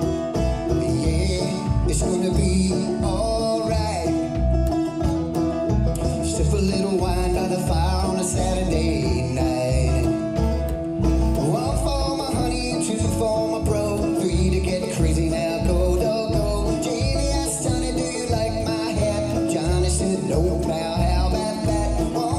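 Live instrumental break: banjo picking over a plucked upright double bass keeping a steady beat of low notes.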